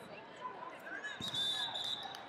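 Indistinct chatter of people in a large sports hall, with a dull thump a little past halfway and a high, thin steady tone through the second half.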